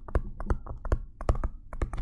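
Pen stylus tapping and scratching on a tablet screen while handwriting a word: a quick, irregular run of small sharp clicks.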